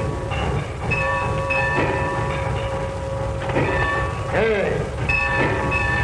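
Steady low rumble of a steam locomotive standing in a roundhouse, with steam escaping. Held tones come and go over it, and a short tone rises and falls about four and a half seconds in.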